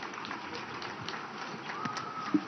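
Scattered applause from a seated audience, heard as many faint, irregular claps.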